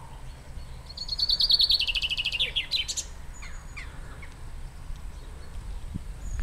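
A songbird singing one phrase of about two seconds: a rapid series of notes falling in pitch, ending in a short flourish. A few fainter bird notes follow, over a steady low rumble.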